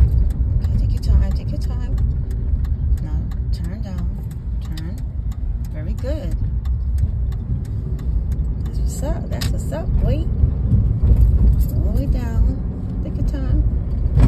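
Car cabin noise while driving: a steady low rumble of engine and road. Through the first half there is a light, regular ticking.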